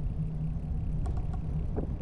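Wind on the microphone and tyre noise from a bicycle riding along an asphalt bike path, a steady low rumble with a few light clicks and rattles about a second in.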